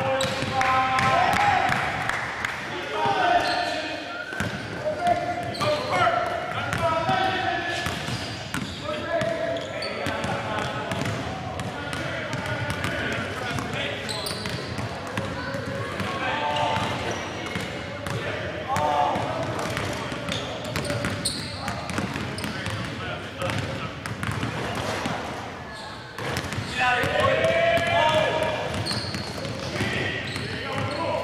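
Voices talking and a basketball bouncing on the court floor, echoing in a large gymnasium, with repeated short thumps of the ball among the talk.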